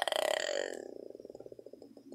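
A woman's drawn-out hesitation "uhh" that trails off into creaky vocal fry, its pulses slowing and fading away over about two seconds.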